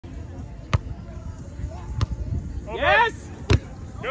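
A volleyball struck by hand three times during a rally, beginning with a serve: three sharp slaps, a little over a second apart. A player shouts between the second and third hits.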